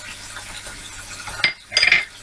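Pan of chicken in soy sauce and vinegar cooking with a faint steady sizzle while a wooden spoon works it, with a light click and then a short clink of kitchenware near the end.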